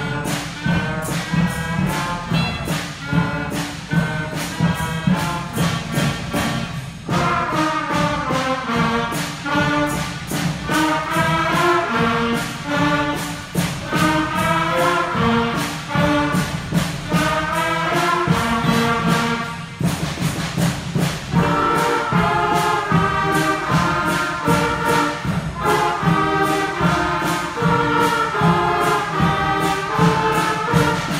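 Sixth-grade school band playing a piece with winds and brass over a steady beat. The melody becomes fuller about seven seconds in.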